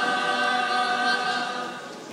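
A school choir singing unaccompanied, holding long notes in several parts that fade away near the end.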